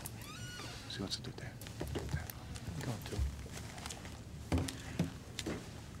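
Quiet room sound with scattered small knocks and clicks of movement, a brief squeak about half a second in, and faint murmured voices near the end.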